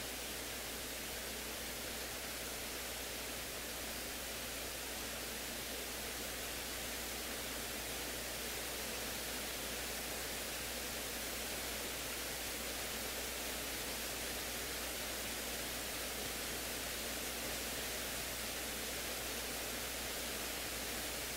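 Steady electronic hiss from an audio feed with no one at the microphones, unchanging throughout, with a low hum underneath.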